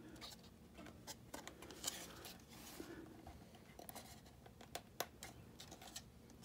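Faint handling noise from a thin metal tailpipe held and turned in the hands: scattered light clicks and rubbing, with a short scrape about two seconds in and a sharper tick near the end.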